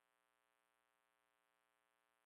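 Near silence: only a very faint, steady, unchanging hum.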